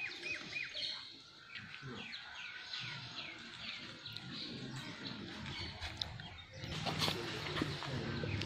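Birds chirping: a long run of short, repeated chirps, several a second. Near the end the chirping gives way to a louder low hum with a couple of sharp knocks.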